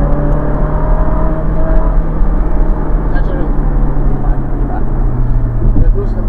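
Ferrari 458's V8 engine running under way at a fairly steady note. It is heard from inside the open cabin with the roof down, with wind noise.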